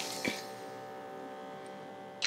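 Automatic blood pressure monitor's small air pump running with a steady hum, with a small click about a quarter second in. The pump is inflating a cuff that is not wrapped on an arm, and it stops near the end.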